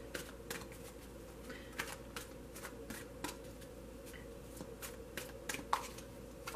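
Tarot cards being handled: a run of soft, irregular clicks, about two a second, over a faint steady hum.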